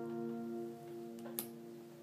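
The last strummed chord of an acoustic guitar ringing out and slowly fading, with one sharp click about one and a half seconds in.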